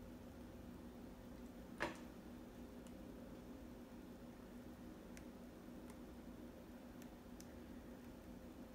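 Near silence: a low steady room hum with a few faint ticks and one sharper click just under two seconds in.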